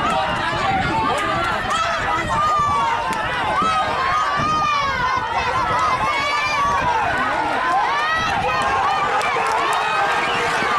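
Spectators shouting and yelling over one another as racehorses gallop down a dirt track, with the horses' hoofbeats underneath.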